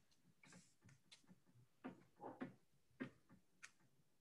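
Near silence: quiet room tone with a few faint, scattered clicks and a brief faint murmur about two seconds in.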